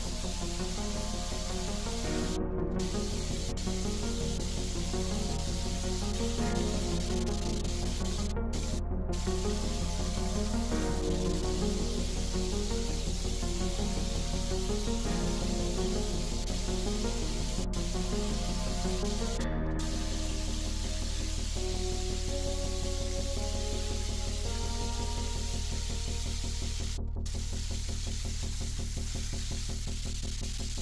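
Steady hiss of an air-powered spray gun applying spray-on bedliner, cutting out for a moment several times as the trigger is let go, under background music.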